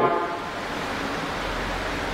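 Steady background hiss with a faint low hum, the room or recording noise under a man's voice, heard in a pause between his words.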